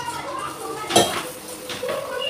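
Steel kitchen utensils clinking against pots and a griddle on the stove, with one sharp, ringing metallic clink about a second in.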